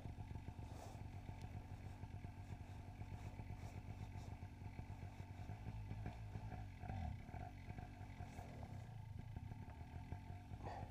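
Paramotor engine idling steadily, with a brief swell about seven seconds in.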